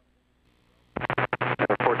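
About a second of near silence on the aircraft radio feed, then an air traffic control transmission breaks in over a steady radio hum. The transmission is choppy, cutting in and out, the controller's signal breaking up.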